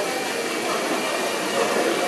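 Steady hall noise with indistinct chatter from onlookers.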